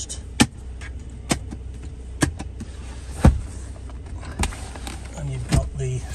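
About six sharp, irregularly spaced clicks and knocks of the rear centre armrest and the ski-hatch latch and panel being worked by hand, over a low steady hum. The loudest is a knock with a low thump about three seconds in.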